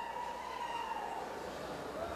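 Quiet hall ambience through the sound system, with a faint steady high tone.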